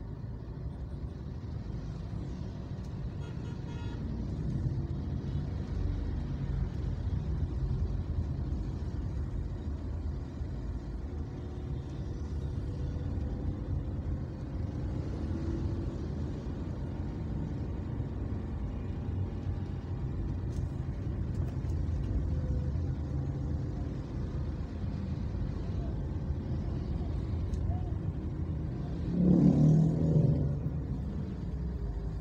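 Steady low road and engine rumble of a car driving in slow traffic among motorbikes and other vehicles, with a short louder burst near the end.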